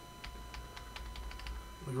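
Computer keyboard keys being tapped in quick succession, about a dozen light clicks, while code is single-stepped in a debugger, over a faint low hum.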